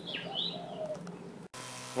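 A bird calls briefly, a quick falling chirp followed by a short higher note, over a faint steady low hum.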